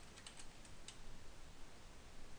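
A few faint keystrokes on a computer keyboard, clustered near the start with one more just under a second in, over low hiss.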